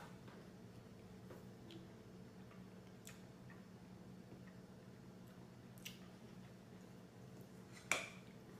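A spoon clicking faintly against a plastic bowl a few times while ice cream is scooped, with one sharper clink near the end, over a steady low room hum.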